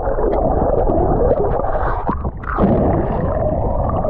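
Muffled underwater sound picked up by a camera held below the surface: water churning and rushing past the microphone as a low, wavering rumble with no high sounds, briefly dipping a little past the middle.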